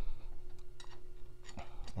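A few light metallic clicks from a wrench working the housing bolts on a Red Lion RJS-100 jet pump. The bolts are being snugged a little at a time around the housing to get even pressure on the new seal.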